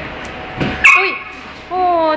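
Pit bull giving a loud, sharp yip about a second in, then a high whine that falls in pitch near the end.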